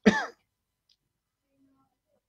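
A man clears his throat once, a short voiced rasp with a falling pitch, followed by near silence.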